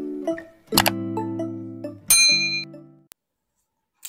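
Intro jingle of sustained, mallet-like chords, with a sharp mouse-click sound effect about a second in and a bright bell ding about two seconds in, as a subscribe button is clicked; the sound then drops to silence for the last second.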